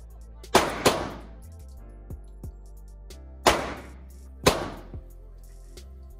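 Handgun fired at an indoor shooting range: two quick shots about a third of a second apart, then two more about a second apart, each a sharp, very loud crack with an echoing tail off the range walls. Fainter shots come in between.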